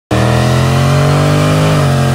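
Dodge Charger Scat Pack's 6.4-litre HEMI V8 revving hard and held high during a burnout, rear tyres spinning and smoking. The engine note climbs slightly and then dips a little near the end.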